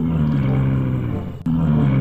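A low, drawn-out dinosaur growl sound effect for an Ankylosaurus, sinking slowly in pitch. It breaks off about one and a half seconds in and a second low growl follows.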